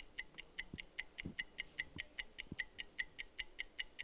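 Game-show countdown timer sound effect: fast, even clock-like ticking, about five high-pitched ticks a second, running down the time the contestants have to answer.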